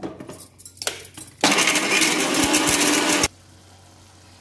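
Indian electric mixer grinder running in one short burst of about two seconds, then cutting off abruptly. A few light knocks of the jar being seated on the base come first.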